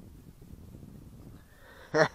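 Faint, low, uneven wind rumble on the microphone. A man's voice starts right at the end.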